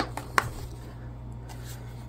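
A few light plastic clicks and taps in the first half-second as the solar flood light's plastic housing and swivel joints are handled, then only a steady low hum.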